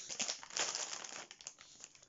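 Plastic sweet packets crinkling as they are handled and moved: a dense crackle in the first second that thins out to scattered crackles.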